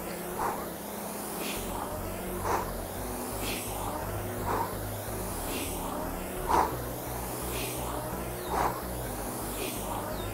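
Concept2 Model D air rower worked at maximum effort, about 30 strokes a minute: a stroke roughly every two seconds, each with a whoosh of the fan flywheel and a hard exhale, with a second, fainter exhale between strokes (two breaths per stroke).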